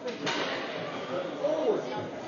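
Ice rink ambience: indistinct spectator voices echoing in a large arena hall, with one sharp knock just after the start.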